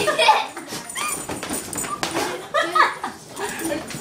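A dog whining and yipping in several short, high calls while playing.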